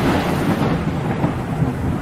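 Thunder-and-rain sound effect: the rolling rumble of a thunderclap, with a hiss of rain, slowly weakening.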